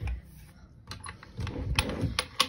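A dresser drawer being handled and pulled open: a series of light clicks and knocks, a few about a second in and more close together near the end.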